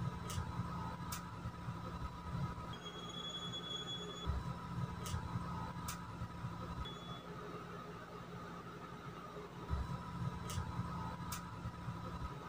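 Quiet room tone: a steady low hum with a few faint ticks, in pairs, and a thin high tone lasting about a second and a half about three seconds in.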